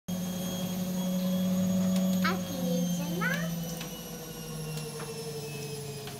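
A man's long, low hum, held steady and slowly sinking in pitch, with two short rising squeaks from a child's voice a little after two and three seconds in.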